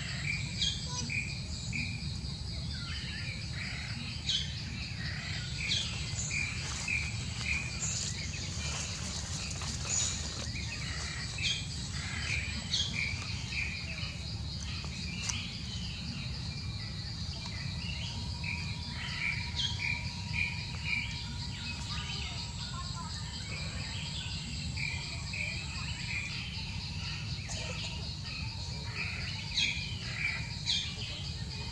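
Outdoor ambience: small birds chirping in short runs of quick repeated notes over a steady high-pitched insect drone, with a constant low rumble underneath.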